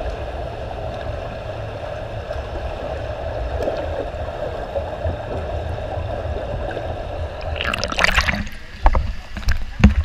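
Underwater pool sound through a camera's waterproof housing: a steady, muffled wash of water churned by a swimmer's freestyle strokes. About seven and a half seconds in comes a sudden, brighter burst of splashing lasting about a second, then a few sharp knocks near the end.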